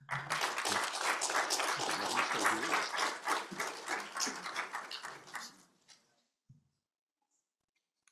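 Audience applauding in a large hall: a dense, even patter of many hands clapping that starts at once and dies away after about six seconds.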